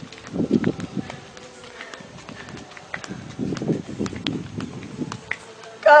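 A person's low, wordless vocal sounds in two bursts of quick pulses: a short one near the start and a longer one of about two seconds in the second half.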